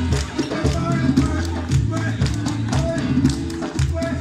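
Live band music: an electric bass holding low notes under hand percussion that taps out a steady beat, with held melodic notes above.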